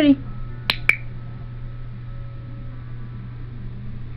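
A pet-training clicker pressed and released: two sharp clicks about a fifth of a second apart, a little under a second in, the marker signal used in clicker training. A steady low hum runs underneath.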